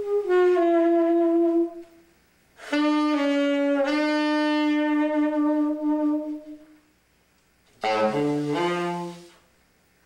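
Solo saxophone improvisation in long held tones with pauses between them. A note slides down to a lower one, then a single note held about four seconds swells and fades, and near the end a short phrase steps down into the low register.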